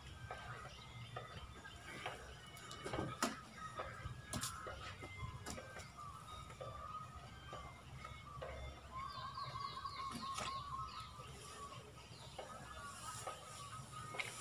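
Outdoor ambience of birds chirping, with a quick run of higher chirps and a trill about nine to eleven seconds in, over scattered small clicks and rustles.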